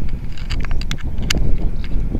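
Irregular small clicks and ticks as the threaded connector of a short flexible handheld-radio antenna is turned onto the radio's antenna socket by hand, with wind rumbling on the microphone.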